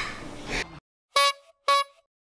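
A two-note musical sting on an end card: two short, bright notes of the same pitch, about half a second apart, after room sound cuts off to silence.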